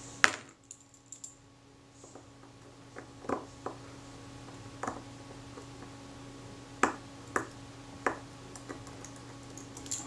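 Sparse, sharp little metallic clicks and taps of small tools and parts on a camera leaf shutter as a tiny screw is fitted to hold its retard gear train, about eight clicks spread irregularly, the loudest right at the start.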